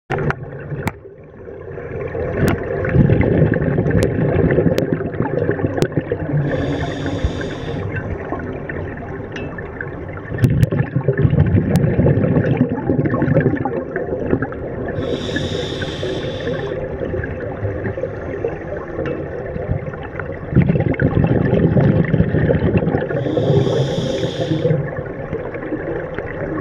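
Scuba regulator breathing underwater: three short hissing inhalations through the regulator, about eight to nine seconds apart, with long gurgling bursts of exhaled bubbles between them.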